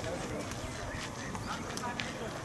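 Indistinct voices of several people talking at a distance, with a couple of short clicks.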